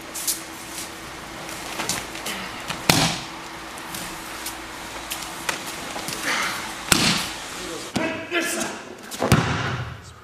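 Bodies landing on a dojo mat as aikido partners are thrown and take breakfalls: several sharp thuds, the heaviest about three seconds in, about seven seconds in and near the end, with smaller slaps and rustling between.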